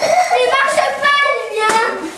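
A young girl's high-pitched voice held in one long, wordless call of fairly steady pitch, with a sharp click at the start and another shortly before the end.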